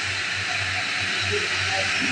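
Steady hissing kitchen noise with a low hum pulsing underneath.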